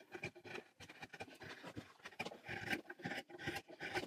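Small multi-tool knife blade shaving and scraping wood in short, irregular strokes, faint.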